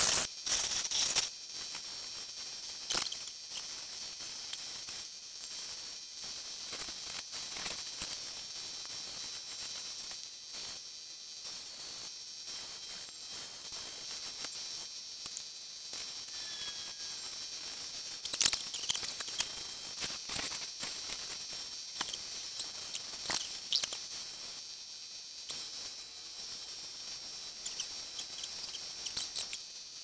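Six-wheel combo cabbing machine running with a steady high whir while a hard stone is ground by hand on its wet 280-grit soft wheel, with scattered sharp squeaks and clicks as the stone is pressed and moved against the wheel.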